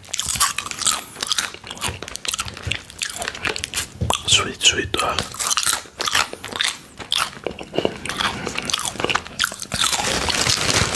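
Close-up crunching of plantain chips being bitten and chewed, a quick, irregular run of sharp crunches.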